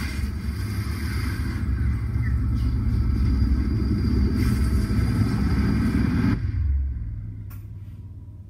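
Deep, steady rumbling sound design from a film trailer's soundtrack playing back. It cuts off sharply about six and a half seconds in, leaving a fading low tail.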